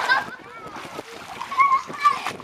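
Water splashing in an above-ground swimming pool as people thrash about in it, with a child's short high-pitched call near the end.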